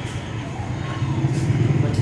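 A steady low rumbling hum, louder in the second half, with faint indistinct voices over it.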